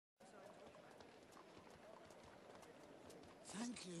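Faint clopping of horse hooves on a cobbled street, with a murmur of distant voices. A man's voice starts speaking near the end.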